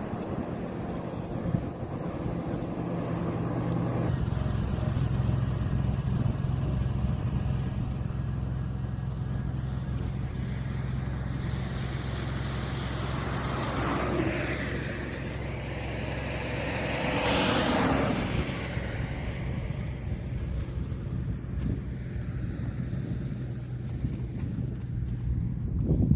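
A vehicle engine running steadily with a low hum. Two louder rushes of a passing vehicle swell and fade around the middle.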